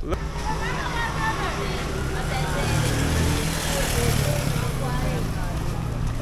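Street sound: a steady low vehicle rumble, with people's voices faintly in the background.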